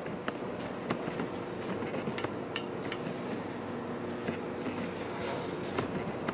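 A hose-fed steam iron worked over cloth on an ironing board: scattered sharp clicks and light knocks over a steady low hum.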